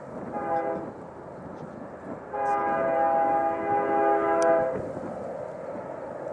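Diesel freight locomotive's air horn: a short blast, then a longer, louder blast about two seconds in, over the steady rumble of the approaching train.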